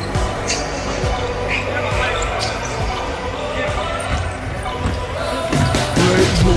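A basketball bouncing several times on a hardwood gym floor, with voices and music in the background.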